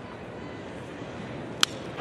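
Wooden baseball bat cracking against a pitched ball once, about one and a half seconds in: a sharp, very short crack over steady ballpark background noise. It is the contact on a line-drive base hit.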